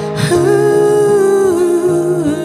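A woman singing a wordless, sustained note over soft, steady instrumental accompaniment; she takes a quick breath near the start and holds the note for about a second and a half before it falls away.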